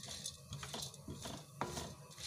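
Chana dal (split chickpeas) being stirred around a wide pan with a flat spatula as it roasts. The lentils scrape and rattle faintly, with a few light clicks of the spatula against the pan.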